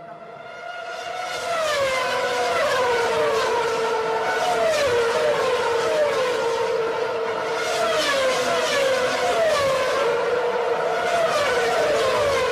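Sport motorcycle engine running at high revs. Its pitch sweeps and settles back to the same steady high note about once a second, growing louder over the first second or two.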